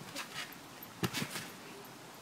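A child bouncing on a trampoline: a few short soft thumps and rustles from the mat, with a quick cluster of three about a second in as she goes into a flip.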